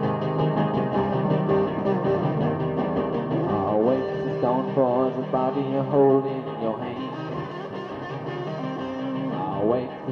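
Krautrock song in an instrumental passage between verses: effects-laden guitar over a sustained backing, with notes that bend up and down from about three and a half seconds in.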